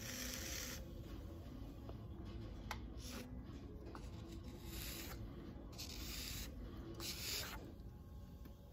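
Wooden knife tool scraping the wet clay at the foot of a small pot on a spinning electric potter's wheel, in several short scraping strokes, while the clay is cleaned up and compressed. Under it the wheel's steady low hum.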